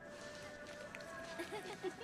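Faint film soundtrack: held background music notes under quiet, indistinct voices.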